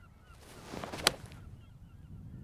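Golf iron swung through with a short whoosh, then one crisp click of the clubhead striking the ball about a second in. Faint seagull calls sound in the background.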